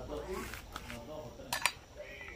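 Two sharp clicks of kitchen utensils knocking, close together about one and a half seconds in, over faint voices.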